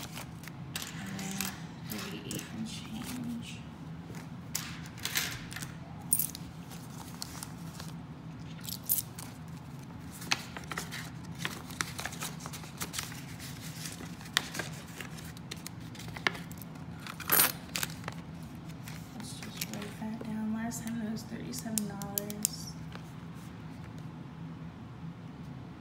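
Paper banknotes being counted and flipped through by hand: irregular crisp rustles and snaps of the bills, the sharpest a little after the middle. Faint murmured counting comes near the start and again near the end.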